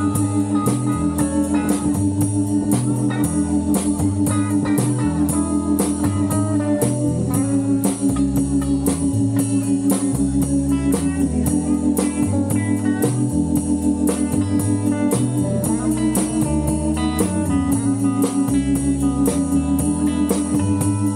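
Live blues band playing an instrumental break: a keyboard on an organ sound holds long chords over a stepping bass line, with electric guitar and a drum kit keeping a steady beat.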